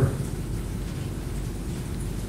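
Steady background noise with a low rumble and hiss: room tone picked up by the panel's microphones in a pause between speakers.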